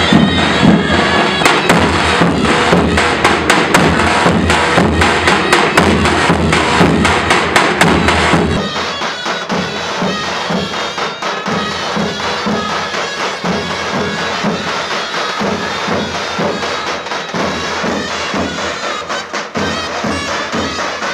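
Davul drums and zurna shawms playing Turkish folk music: a zurna melody over steady, rhythmic drumbeats. About eight seconds in, the sound becomes quieter and loses most of its bass.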